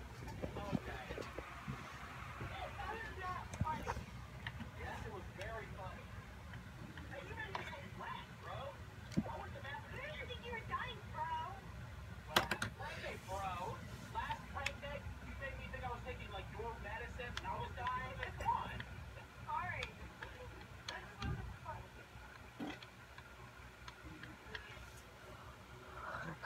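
Faint, indistinct voices talking in the background over a low steady hum, with a single sharp click about halfway through.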